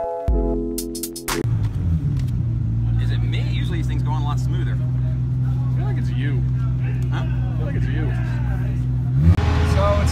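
Background music for about the first second, cutting off abruptly. Then a steady engine drone with faint voices behind it. The drone glides up briefly and settles at a lower, louder pitch about a second before the end.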